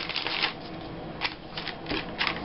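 Paper rustling in several short crinkly strokes as hands handle and press down scrapbook paper and cut-outs.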